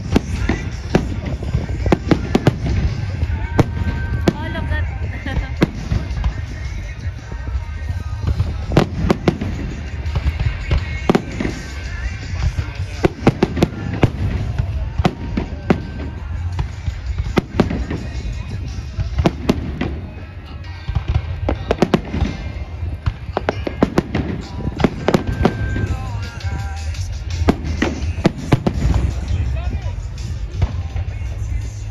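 Fireworks display: a dense, continuous run of sharp bangs and crackling reports from bursting aerial shells, often several a second, over a steady low rumble.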